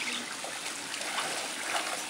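Pool water splashing and lapping as children kick and paddle in shallow water, a steady watery wash.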